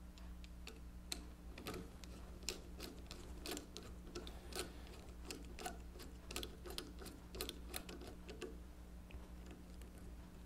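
A screwdriver turning a thin, freshly oiled screw into the frame of a 1920s Monroe model K mechanical calculator, with faint irregular clicks about twice a second that stop shortly before the end.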